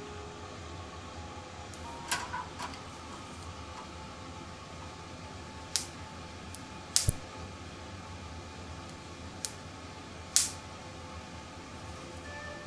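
Hard oyster shells and utensils clicking and knocking about six times over a steady low hum: a small cluster about two seconds in, a double knock with a dull thud near the middle, and a loud sharp click near the end.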